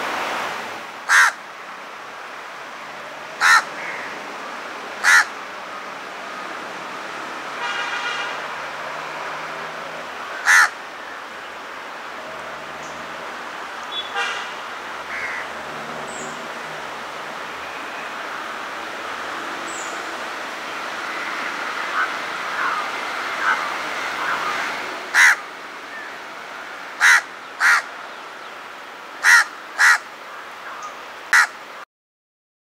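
House crow (Corvus splendens) cawing: about nine short caws, singly and in quick pairs, with a long pause in the middle and a cluster of calls near the end, over steady background noise.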